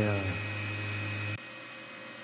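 Two Trees SK1 CoreXY 3D printer's toolhead shaken by the stepper motors during the input-shaping resonance test, a steady low buzz that stops abruptly about a second and a half in as the X-axis test ends.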